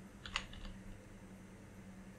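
A few faint taps on a computer keyboard in the first second, as letters are typed.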